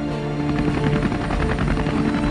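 Helicopter rotor chopping, coming in about half a second in, over sustained dramatic music.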